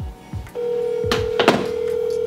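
Telephone ringback tone: one steady ring of about two seconds that starts about half a second in, the sign of an outgoing call ringing unanswered. A few low thumps and two sharp clicks near the middle.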